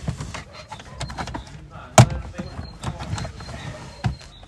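Plastic center-console side trim panel being pried off: small clicks and plastic rubbing, with one sharp snap about halfway through as a retaining clip lets go.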